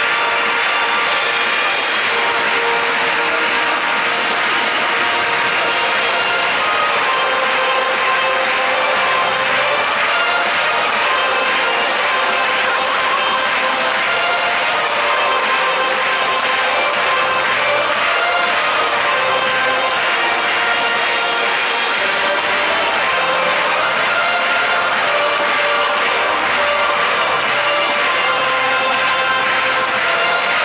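Music over a stadium's loudspeakers, mixed with the noise of a large football crowd, going on steadily without a break.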